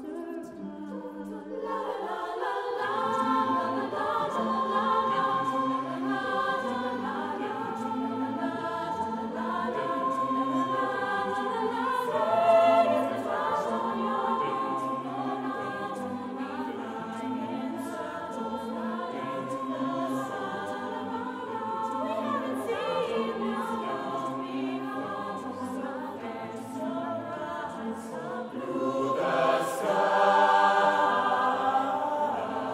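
Mixed choir of men and women singing a cappella in several-part harmony, with low bass voices filling in about two seconds in.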